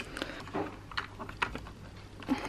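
A few light plastic clicks and taps as a giving set is fitted into the cassette slot of a Kangaroo enteral feeding pump.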